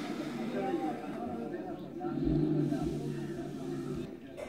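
Indistinct chatter of a group of men talking. Around the middle a louder low rumble comes in for about a second.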